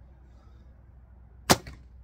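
Recurve bow shot, most likely a Samick Sage with puff string silencers: a single sharp snap of the bowstring on release about one and a half seconds in, dying away quickly.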